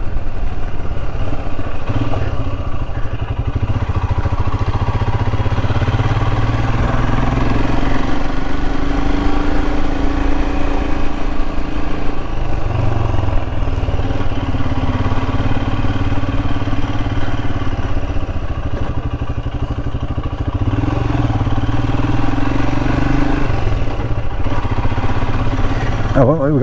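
Royal Enfield Himalayan's single-cylinder engine running as the motorcycle is ridden, its note rising and easing a few times.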